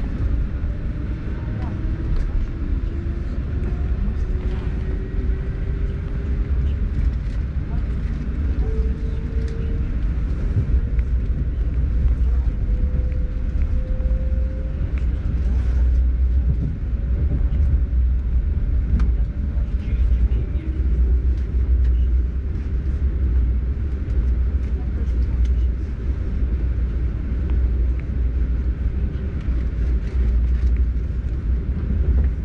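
Interior running noise of an ES2G Lastochka electric train under way: a steady low rumble from the wheels and the carriage. Through the first half it carries a faint whine from the traction motors that rises slowly in pitch as the train gathers speed, then fades out.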